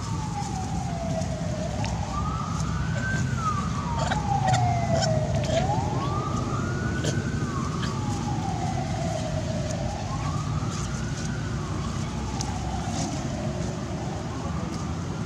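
A wailing siren, its pitch rising quickly and then falling slowly in repeated sweeps about every four seconds, over a steady low rumble.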